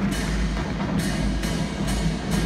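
A marching band's percussion opening its show: sharp drum and cymbal hits, roughly one every half second, over a held low note.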